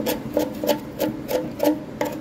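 A small hand tool scraping caked dirt and scale off the edge of a front-loading washing machine's stainless steel drum, in short rasping strokes about three a second.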